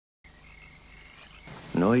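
Faint hiss with a thin, steady high-pitched tone, possibly night-time ambience, then a man's voice begins speaking Italian near the end.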